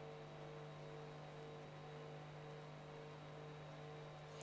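Faint, steady electrical hum with a light hiss, the background noise of the broadcast audio line with no voice over it.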